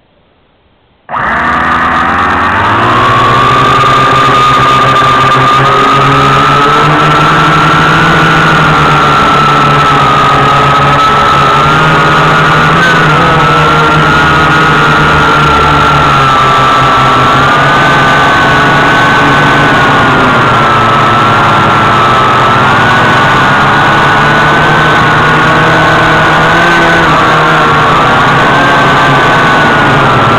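Syma X8W quadcopter's motors and propellers starting abruptly about a second in, rising in pitch as it lifts off the grass. They then run with a loud, steady whine whose pitch wavers up and down with the throttle in flight.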